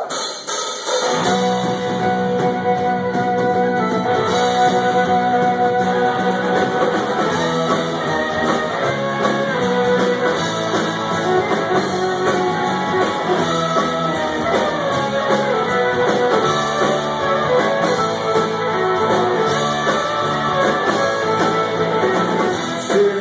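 Live Celtic rock band playing an instrumental intro on guitars, fiddle, bass and drum kit, with no singing yet. A lone note opens it, and the full band comes in about a second later.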